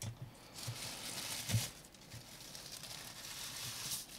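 Soft plastic bag rustling and crinkling in faint, uneven stretches as the microscope body is unwrapped from it, with one light knock about one and a half seconds in.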